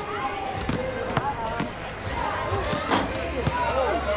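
A basketball bouncing on a court, irregular sharp knocks, with people's voices around it.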